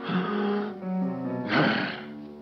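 Cartoon bulldog snoring over a soft orchestral score: one noisy snore breath at the start and a louder one near the end.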